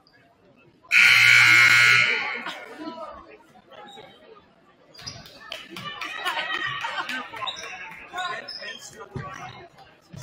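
Gymnasium scoreboard buzzer sounding once, loud and steady for about a second. Voices and crowd chatter follow in the echoing gym.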